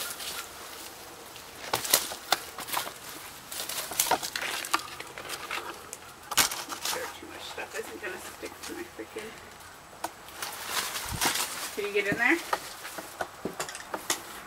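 Footsteps crunching over dry leaves and debris: an irregular scatter of sharp crackles and clicks.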